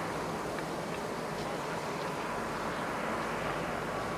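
Steady outdoor background noise, an even hiss with a few faint ticks.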